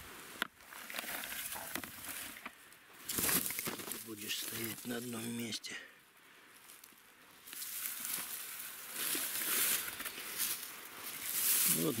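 Dry grass rustling and crackling as it is parted and pushed aside by hand. A short murmur of voice comes about four to five seconds in, and a spoken word near the end.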